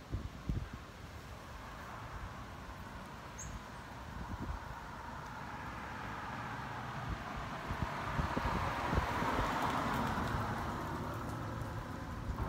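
A car passing along the street: its road noise builds slowly, is loudest about nine to ten seconds in, then begins to fade.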